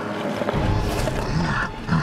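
A man's snarling roar, deep and rough, starting about half a second in, over background music.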